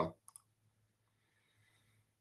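Two quick, short clicks close together just after speech stops, then a quiet room with a faint steady low hum.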